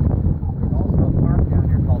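Motorboat engine running as the boat cruises, a steady low rumble, with heavy wind buffeting on the microphone.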